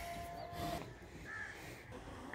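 A few short bird calls in the open air, over a steady high-pitched tone that breaks off just under a second in.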